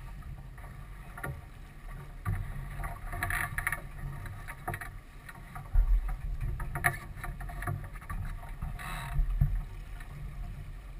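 Sailboat under way: wind buffeting the microphone as a low rumble that gusts harder about six seconds in and again near the end, with water washing against the hull in short splashy bursts.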